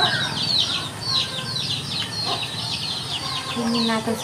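Chicks cheeping: a steady run of short, high, falling chirps, several a second. A low voice-like call starts just before the end.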